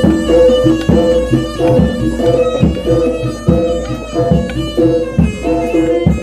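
East Javanese jaranan gamelan music played loud: a sustained, reedy melody stepping between two main notes over steady drum strokes.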